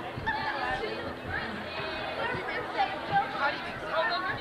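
Students' chatter: several voices talking at once, none distinct, with a few louder exclamations near the end.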